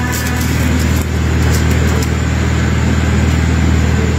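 A steady low mechanical hum, like a motor or engine running, with no change in pitch.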